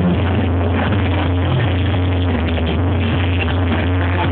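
Loud live Mexican banda music, amplified on stage, with a heavy, steady bass.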